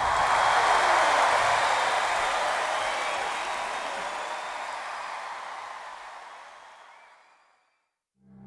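Theatre audience applauding, loudest at the start and fading steadily away over about seven seconds.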